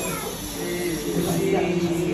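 Children's voices calling out together in high, drawn-out tones.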